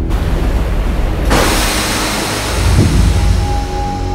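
Animated-series soundtrack: sustained low orchestral music under a loud rushing noise effect that comes in suddenly about a second in, with a held high note entering near the end.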